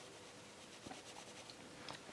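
Faint scratching of a Derwent Inktense pencil colouring on a paper colouring-book page.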